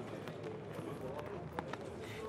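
Faint, steady background hiss of an outdoor live broadcast feed, with a few light ticks.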